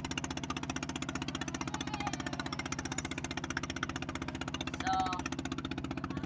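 Boat engine running steadily under way, a fast, even chugging pulse heard from on board.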